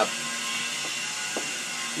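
Two light clicks about half a second apart from a screwdriver working on a scooter's engine, over steady background hiss.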